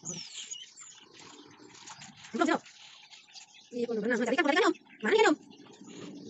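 Otters calling in short, high, wavering whines. There is a short call about two and a half seconds in, a longer one lasting about a second near four seconds, and a brief one just after five seconds.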